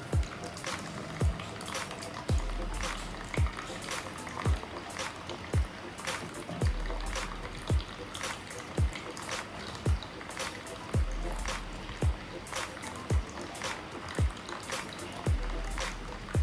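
Background music with a steady kick-drum beat about once a second. Under it there is a faint trickle of water running from the siphon tube into a plastic tub.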